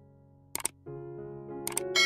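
Soft background music with a click-sound effect from a subscribe-button animation: a quick double click about half a second in and another near the end.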